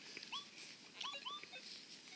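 Faint, short squeaky calls from a small animal, several in quick succession, each rising in pitch and then levelling off.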